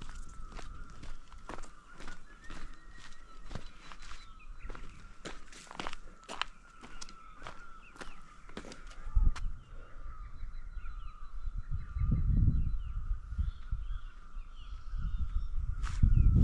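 Footsteps on a dirt trail, roughly one to two steps a second, over a steady high whine, until they stop about halfway through. From then on, wind buffets the microphone in low gusts and small bird chirps come in.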